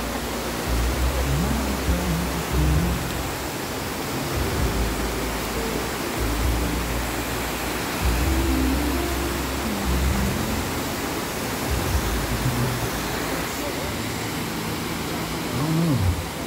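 Waterfall rushing over rock ledges, a steady wash of noise, with wind buffeting the microphone in gusts.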